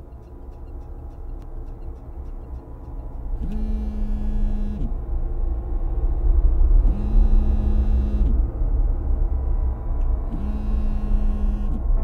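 A low rumbling ambient drone that grows steadily louder, with three evenly spaced buzzes of a mobile phone vibrating, each about a second and a half long and about three and a half seconds apart.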